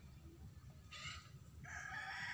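Faint background animal call: a long held note beginning about one and a half seconds in, after a short faint noise about a second in.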